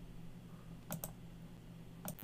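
Two quick clicks at the computer, close together about a second in, over a faint steady low hum.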